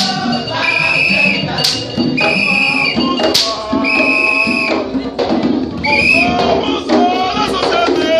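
A group of voices singing a Vodou chant in short, repeated held phrases, with light percussion and a few sharp strikes.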